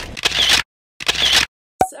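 Two camera shutter sounds, each about half a second long, with dead silence between them, as a photo is taken. A short sharp sound comes near the end.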